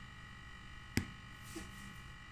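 A single sharp click or tap about a second in, over a faint steady electrical hum.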